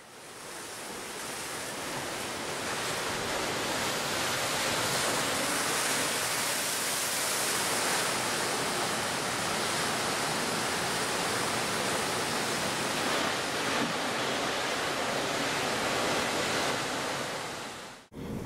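Steady rushing noise of an added sea-and-wind sound effect, fading in over the first couple of seconds and fading out near the end.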